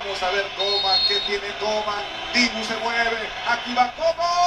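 Speech only: a man talking at a moderate level, with the sound of a television broadcast commentary rather than a voice close to the microphone.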